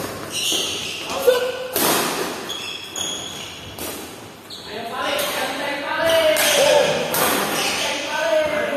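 Badminton doubles rally: sharp cracks of rackets hitting the shuttlecock and short squeaks of shoes on the wooden court, ringing in a large hall. In the second half players and onlookers are shouting.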